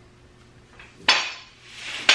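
A sharp knock about a second in, and another near the end. Each one trails off in a bright hiss that echoes in a hard-walled room.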